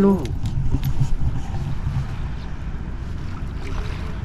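Low, uneven rumble of wind buffeting the microphone outdoors, with a few faint ticks.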